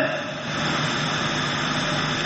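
Steady, even rushing background noise with a faint low hum, without any speech.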